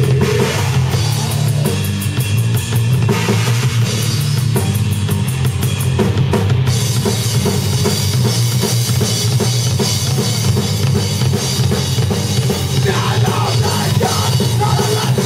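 Live band playing a song at full volume, with the drum kit prominent: fast, even drum strikes that break off abruptly about halfway through into a steadier wash of sound. The recording is loud and dirty-sounding.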